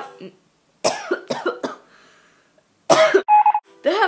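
A girl's non-speech vocal sounds: a few short breathy bursts about a second in, then a louder burst near the end followed by a brief high tone.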